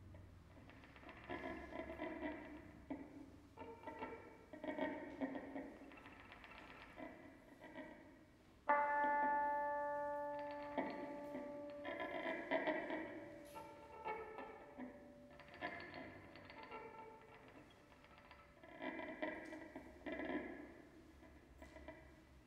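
Electric guitar played solo through an amplifier in soft, spaced phrases of notes. About nine seconds in, a sudden loud chord rings out and fades away over about two seconds before the quieter playing resumes.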